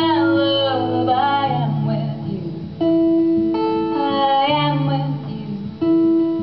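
A woman singing in a live acoustic song, with strummed acoustic guitar under long held notes from a second instrument. The held notes change pitch abruptly a few times.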